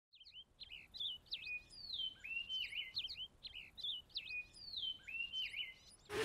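Faint birdsong: short chirps and rising and falling whistles with a couple of long falling slides. The sequence seems to repeat about every two and a half seconds, like a looped ambience track.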